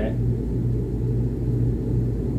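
Miller packaged air conditioner running, heard through a house register as a steady low rumble of airflow with a constant low hum.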